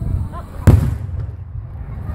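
A single loud boom from an aerial firework shell bursting, about two-thirds of a second in, with a brief low rumble trailing after it.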